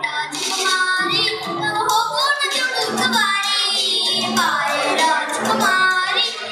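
A child singing a Kannada song over a recorded backing track, with a wavering held note about midway through.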